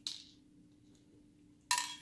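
Small metal screw and screwdriver being handled while the drive-mounting screws come out: a short scrape at the start, then near the end a sharp metallic clink with a brief ring.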